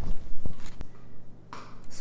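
Handling of a plastic storage tote's clear lid: three light clicks in the first second, then a short rustle of plastic near the end as a plastic seedling tray is picked up.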